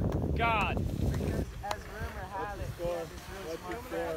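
A brief high-pitched yell about half a second in, over wind rumble on the microphone that stops about a second and a half in, followed by several people calling and chattering.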